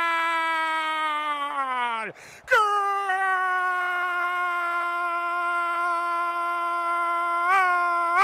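A radio football commentator's long, held goal cry ('gol'), sustained on one high pitch. The first cry falls away about two seconds in, and after a quick breath a second long held cry follows, wavering slightly near the end.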